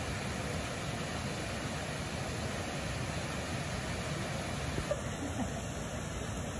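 Steady rushing of a waterfall and river water.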